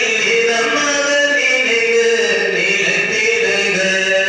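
A priest chanting a liturgical funeral prayer into a microphone, in long held notes that step slowly up and down in pitch.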